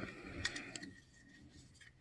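Faint handling of white plastic model-kit parts: a few light clicks and a soft rustle in the first second, then near silence.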